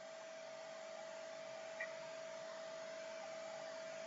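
Steady background hiss of the recording with a faint, steady mid-pitched hum running under it, and one tiny click a little before halfway.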